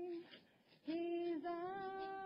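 A woman singing an Ojibwe water song unaccompanied, holding long steady notes. She breaks off for a breath a moment in and comes back in just under a second later, with the note dipping in pitch near its end.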